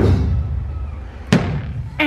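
A sudden loud boom with a deep rumble that carries on for over a second, then a second sharp hit about a second and a half in: an edited-in dramatic sound effect or music sting played over the shot.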